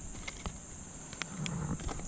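Steady high-pitched buzz of insects, with a few faint sharp clicks from handling a fishing lure and its plastic package.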